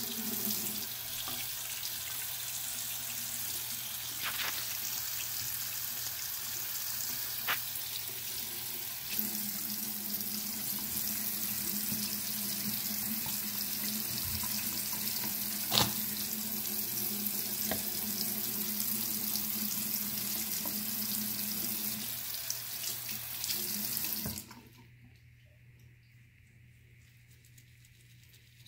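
Bathroom faucet running steadily into a sink basin, the water splashing over a silicone brush-cleaning mat held under the stream, with a few light knocks. The tap is shut off near the end.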